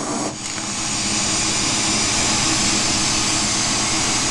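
Glassworking torch flame burning with a steady rushing hiss, dipping briefly just after the start, while it heats a borosilicate glass tube to a molten glow.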